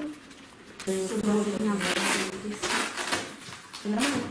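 Indistinct voices speaking in a small room, starting about a second in, with a couple of short rustling hisses mixed in.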